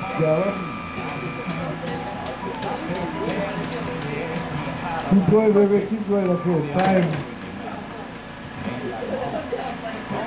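People's voices talking and calling out, loudest about five to seven seconds in, over a low steady hum. A steady high tone sounds for the first second and a half.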